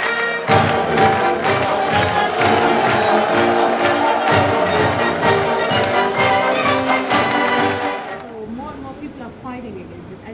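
Brass marching band music with a steady drum beat and a crowd cheering, stopping about eight seconds in, after which faint voices are left.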